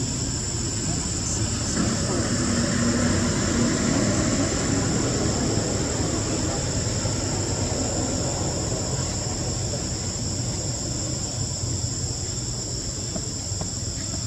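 Steady, high-pitched drone of forest insects, with a low background rumble and faint distant voices.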